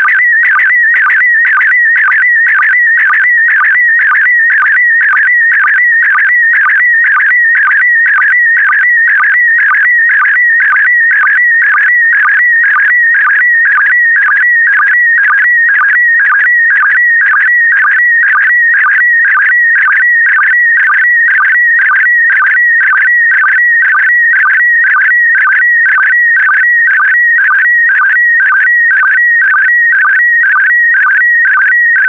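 PD120 slow-scan television (SSTV) signal: a continuous high-pitched warbling tone that dips at an even beat about twice a second, each dip a sync pulse starting the next pair of picture lines as an image is sent line by line.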